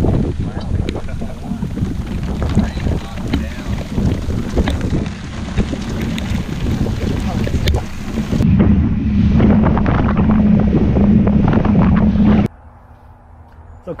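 Strong wind buffeting the microphone and choppy waves slapping the hull of a small boat in rough sea. A steady low hum joins in for the last few seconds before the sound cuts off abruptly.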